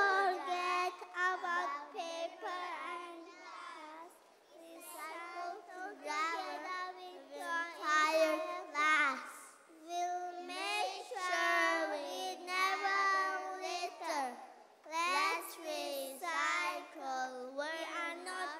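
Young children's voices delivering a poem about recycling in a sing-song, chanted way, in short phrases with brief pauses between lines.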